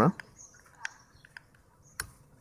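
A few faint, separate clicks of a Canon 550D's buttons and control dial being pressed and turned.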